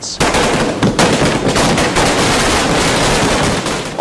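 A string of firecrackers going off in a rapid, continuous crackle of sharp pops, starting just after the start and easing off near the end.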